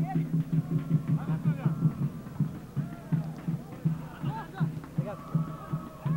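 Football supporters in the stands chanting and singing over a steady, repeating low drum beat.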